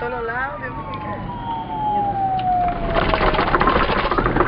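A siren wailing, its pitch gliding slowly downward over the first three seconds. A loud burst of rapid, rattling noise follows near the end.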